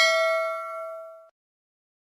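Bell 'ding' sound effect of a subscribe-button animation: one struck bell tone ringing out and fading, cut off abruptly just over a second in.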